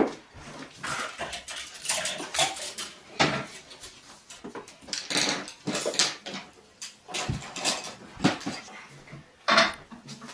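Picture books being picked up off a wooden floor and set on a wall shelf: a run of irregular knocks, taps and rustles, with a sharp knock at the very start and another near the end.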